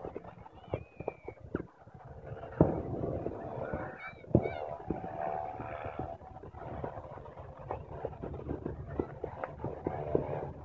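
Distant fireworks going off: irregular bangs and pops, the loudest about two and a half seconds in and another just after four seconds.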